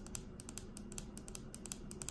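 Long fingernails clicking lightly on a hard tabletop: small, irregular taps, several a second.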